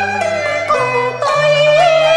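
Cantonese opera music: a melody line with sliding, wavering notes over held low accompaniment notes.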